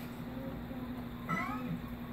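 A cat meowing once, a short rising-and-falling call about one and a half seconds in, over a steady low hum.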